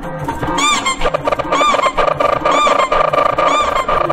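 Heavily edited remix audio: a dense looped music bed with a short rising-and-falling tone repeated four times, about once a second.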